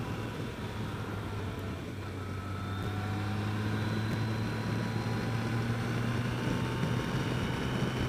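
Yamaha FJR1300's inline-four engine humming steadily at cruising speed, heard from the rider's seat with road and wind noise. The engine note swells slightly a few seconds in.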